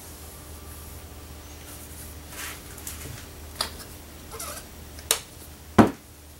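Low steady hum with a few short clicks and scrapes as a paintbrush works on a board and paint supplies are handled. The loudest is a knock near the end.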